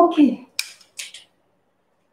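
Two brief, faint rustling scrapes of a person shifting and sitting down on a foam exercise mat, just after a spoken 'ok'.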